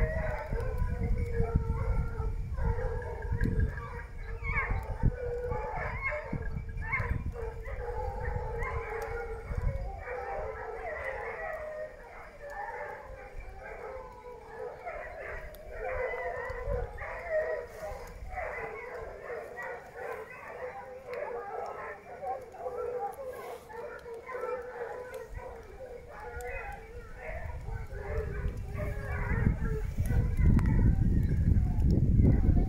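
A pack of hunting hounds baying together in chorus, many voices overlapping without a break. A low rumble on the microphone runs under them for about the first ten seconds.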